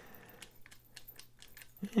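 Faint, irregular small clicks of a screwdriver bit turning in the pivot screw of a titanium frame-lock folding knife as the screw is driven in.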